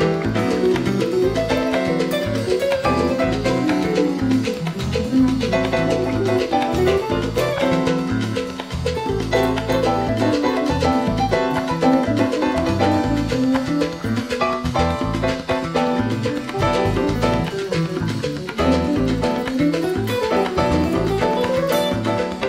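Electric guitar solo on a Godin guitar, a running melodic line of single notes played over a backing track with a bass line and chords.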